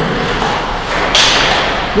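Table tennis ball being struck back and forth in a rally: light hits of the ball on rubber paddles and the table, the loudest a sharp crack a little over a second in, echoing in a large hall.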